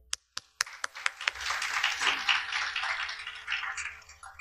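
Audience applauding. It opens with a few scattered claps, fills into steady clapping about half a second in, and dies away near the end.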